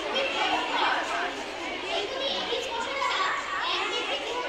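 Many children's voices chattering and calling over one another.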